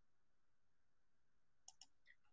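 Near silence, then two quick computer mouse clicks close together near the end.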